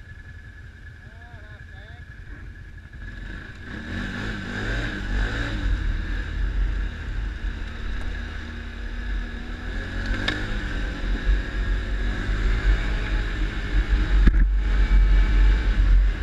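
ATV engine running low at first, then picking up about three seconds in and pulling along the trail, with its rumble growing louder toward the end.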